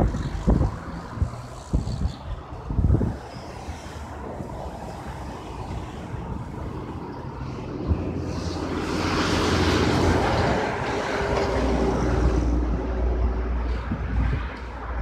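Road traffic passing on a busy multi-lane road: a vehicle's tyre and engine noise swells from about eight seconds in, is loudest a couple of seconds later and then eases off. Wind thumps on the microphone in the first few seconds.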